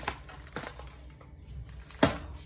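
Popcorn packaging crinkling faintly as it is handled, with a few light clicks.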